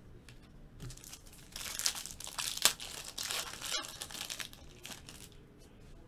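Foil wrapper of a Panini Clear Vision football card pack being torn open and crinkled in the hands. A run of crinkling starts about a second and a half in and fades out at about five seconds, with one sharp tear near the middle.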